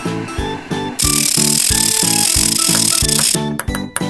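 Children's background music with a steady bass beat, overlaid from about a second in by a loud, noisy cartoon machine sound effect lasting about two and a half seconds as an animated press squashes a rugby ball. Near the end, short ticks and plinks start as small balls begin dropping.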